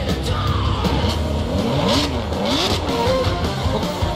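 Loud rock music mixed with sports car engines revving in quick rising-and-falling blips, strongest in the middle.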